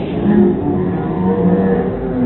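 A group of voices chanting together in a loud, repeated rhythm of held low syllables, urging on someone gulping from a pitcher.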